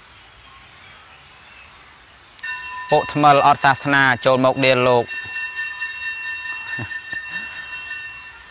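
A man speaking briefly over a steady sustained tone with several pitches. The tone comes in a little over two seconds in and holds on unchanged after the voice stops.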